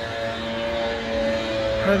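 Steady mechanical hum: several held tones over a low rumble.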